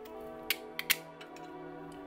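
Okatsune bypass pruners snipping the end of a dormant fig cutting: a few sharp clicks of the blades closing through the wood, the last and loudest about a second in.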